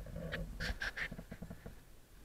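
Knocks and rattles as a mountain bike and its mounted camera are moved about. Three short squeaks come about half a second to a second in, and a run of quick, evenly spaced ticks follows.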